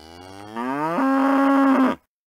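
A cow mooing: one long call that rises in pitch over its first second, then holds steady and louder before cutting off abruptly.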